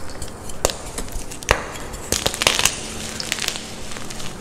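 Hands crushing blocks of plain white gym chalk in a bowl of loose powder: a soft powdery crumble throughout, with sharp crunches as pieces snap, a single one about half a second in and another at about a second and a half, then a quick run of crunches in the middle.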